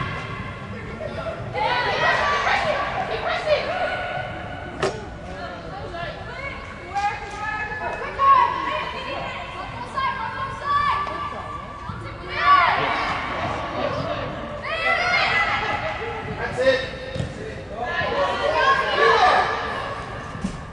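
Young players and spectators shouting and calling out during a soccer game in a large indoor sports hall, the voices echoing. A few sharp thuds of the ball being kicked cut through, the clearest about five seconds in.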